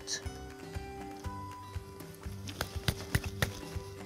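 A wooden spoon stirring risotto in a metal pan, knocking against the pan in a quick run of sharp clicks in the second half. Background music with steady held notes plays throughout.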